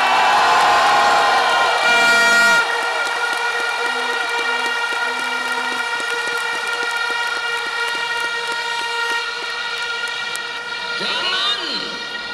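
A large crowd blowing many horns at once in steady, overlapping tones of different pitches over a general crowd din. A few short low toots come about four to six seconds in, and fast, even clapping runs through the middle.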